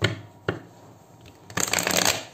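A deck of tarot cards being handled: two sharp taps, then about a second and a half in a dense burst of shuffling lasting about half a second.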